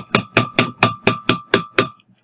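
Rapid even taps on a glass measuring cup holding water, about four a second, each with a short bright ring from the glass, done to knock air bubbles off the submerged plastic object.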